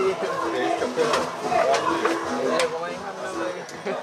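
Indistinct talking close by, with a few short knocks.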